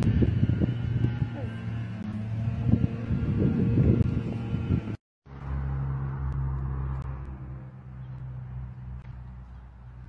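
Rustle and knocking handling noise from a phone being carried at walking pace, over a steady low hum. After a short dropout about five seconds in, a smoother steady low hum and rumble that slowly fades.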